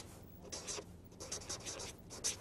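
Chalk scratching on a blackboard in a run of short, faint strokes as a word is written.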